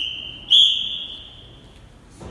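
Referee's whistle blown twice at a steady high pitch: a long blast that stops just before half a second in, then a second, sharper blast that trails off over about a second. It is the chief judge's signal for the judges to raise their score cards.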